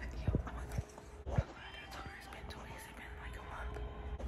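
A woman whispering close to the microphone, with a few short low thumps in the first second and a half.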